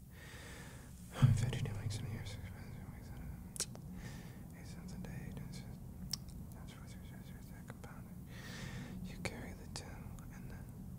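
A man whispering unintelligibly to himself between breaths, with a soft low thump about a second in and a few small mouth clicks, and a breathy exhale near the end.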